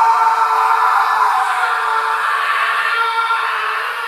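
A steady, loud electronic buzz held at one pitch with a hiss over it, the stuck sound of a crashed TV. It cuts off suddenly just after the end.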